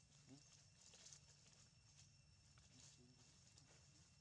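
Near silence: a faint steady high-pitched insect drone, with a few soft clicks and one faint short squeak about a third of a second in.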